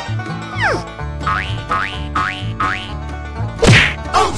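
Background comedy music with a steady beat and dubbed cartoon sound effects: a falling whistle-like glide, then four quick rising boings about half a second apart. A loud hit comes near the end.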